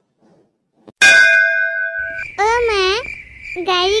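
A sudden metallic ding sound effect about a second in, ringing for about a second after near silence. From about two seconds in a steady high cricket chirring with a low rumble starts, and a high-pitched cartoon voice speaks over it in sweeping phrases.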